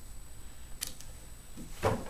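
A ShamWow cloth being handled and laid flat on a countertop by hand: a short faint rustle about a second in, and a soft pat as the hands press it down near the end.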